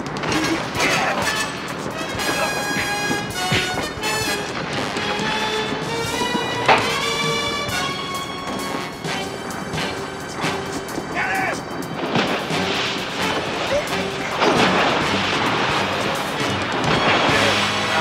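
Dramatic action-score music with sustained pitched lines, over fight sound effects: scattered punches and thumps.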